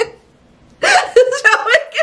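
A brief pause, then about a second in a woman's voice comes back, laughing as she starts talking again.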